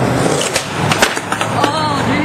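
Skateboard loose after a failed landing, rolling and clattering across the pavement on its own: steady wheel noise broken by a few sharp clacks, the loudest about a second in.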